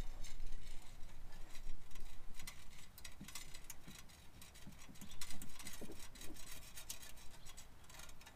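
Small, irregular metallic clicks and rattles of a hitch bolt being screwed by hand onto the end of a fish wire, with a square spacer plate on the wire, over a low steady rumble.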